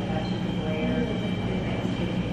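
Busy room ambience: distant chatter over a steady low hum and rumble.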